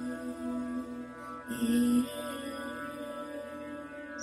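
Slow meditation music: a held, chant-like mantra tone over a sustained drone, with a new note and a short breathy hiss coming in about a second and a half in.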